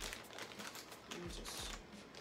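Plastic FedEx Express mailer bag crinkling quietly as it is handled and turned over in the hands.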